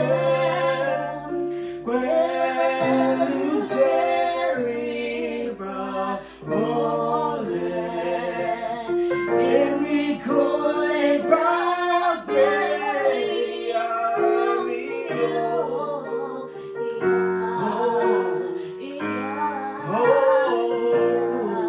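A woman and a man singing a slow song together over long held chords on an electronic keyboard.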